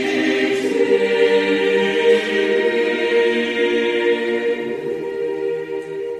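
A choir singing long, held notes, fading out near the end.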